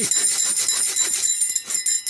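A 210 mm folding pruning saw cutting through a log in rapid back-and-forth strokes, its blade giving off a thin, high metallic ring. The strokes weaken about a second and a half in.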